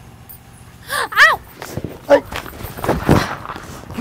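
Two short cries, rising and falling in pitch, about a second in, then scuffling of feet and bodies with another brief vocal sound as a woman sags into a man's arms.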